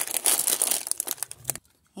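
Plastic bag of in-shell peanuts crinkling and crackling as it is handled, a dense run of sharp crackles that stops about three-quarters of the way through.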